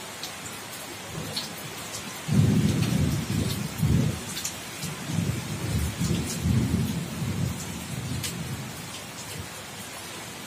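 Steady rain falling on a corrugated roof and a wet concrete terrace. About two seconds in a long roll of thunder begins, loudest in its first couple of seconds, then rumbles on and off and fades over the next several seconds.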